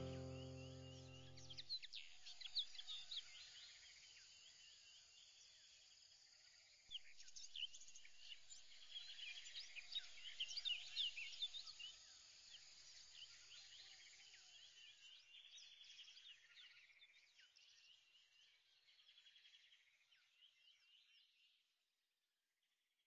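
A music track ends in the first two seconds, leaving faint chirping of many small birds. The chirping grows busier about seven seconds in, then slowly fades away just before the end.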